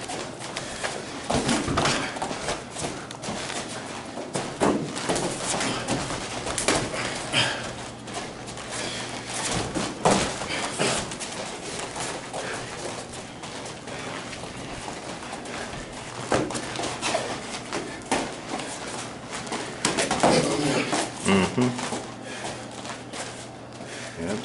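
Light-contact martial arts sparring: irregular sharp slaps and thuds of hands striking and blocking and shoes moving on the mats, coming in scattered flurries, with low voices in the room.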